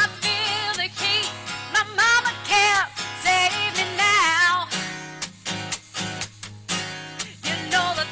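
A woman singing with vibrato to her own strummed, capoed acoustic guitar in an upbeat, rocking song. Her voice drops out a little past halfway, leaving the guitar strumming alone, and comes back near the end.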